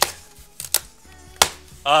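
Cardboard shipping case being torn open and handled by hand: three sharp knocks and clacks of cardboard about two thirds of a second apart, with light rustling between them.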